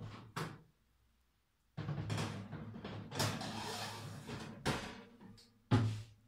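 A metal baking tray being put into an electric oven: a couple of short knocks, then a few seconds of metallic scraping and clattering, and a loud sharp knock near the end as the oven door shuts.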